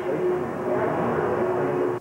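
A steady engine drone: an even rumbling noise with one constant hum.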